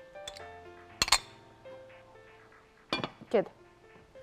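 A lid set on a cooking pot with a sharp double clink about a second in, then two lighter knocks near three seconds, over soft background music.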